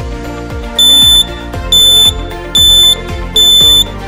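A small piezo buzzer on a breadboard alarm circuit sounds four loud, high-pitched beeps of about half a second each, spaced under a second apart. This is the laser trip alarm going off because its laser beam to the light sensor has been interrupted.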